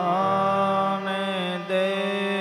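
A voice chanting a devotional invocation in long held notes, wavering slightly and changing pitch about a second in and again near the end, over a steady drone of live accompanying music.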